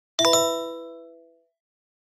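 A bright, bell-like ding sound effect: one quick chime of several ringing notes that fades away within about a second.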